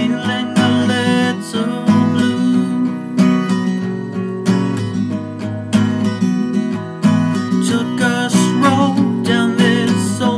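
Acoustic guitar strummed in a steady rhythm, about one stroke every second and a quarter. A man's singing voice comes in over it near the end.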